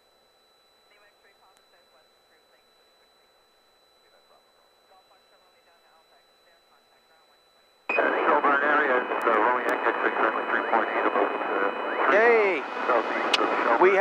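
Aircraft radio heard through the intercom feed: faint chatter with a thin steady tone for the first several seconds, then about eight seconds in a loud voice transmission cuts in abruptly and carries on.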